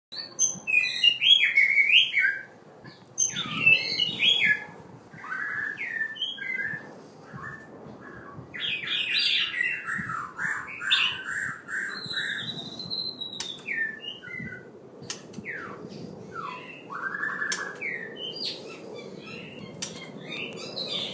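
Male white-rumped shama, halfway through his moult, singing: a run of varied whistled and chattering phrases, loudest in the first few seconds, with a long wavering whistle about twelve seconds in and a few sharp clicks.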